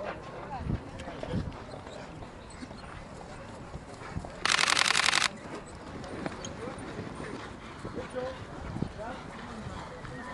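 Background voices of people talking outdoors, with a loud, steady buzzing tone lasting just under a second near the middle.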